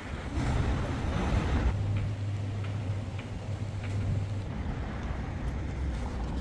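Street traffic noise with a motor vehicle's low, steady engine hum that starts shortly after the beginning and drops away after about four seconds.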